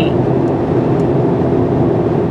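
Steady road and engine noise of a car driving at highway speed, heard inside the cabin.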